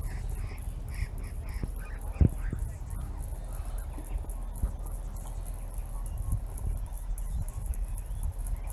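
A bird calling in a quick, even series of short high notes, about three a second, that stops after about two seconds. Just after that there is a single low thump, the loudest sound.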